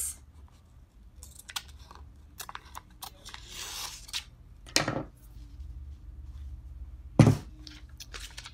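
Clear transfer tape being pulled off its roll and cut, with a short peeling hiss about three and a half seconds in and scattered light clicks of handling. Two louder knocks come near five seconds and near the end, the second the loudest.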